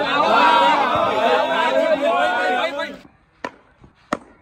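Several men's voices raised together, overlapping, for about three seconds until they cut off abruptly. Two short, sharp knocks follow near the end, a cricket bat striking the ball.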